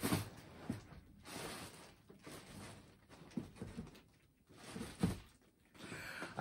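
Faint, scattered rustles and soft scrapes of a hand feeling through the contents of a large cardboard box.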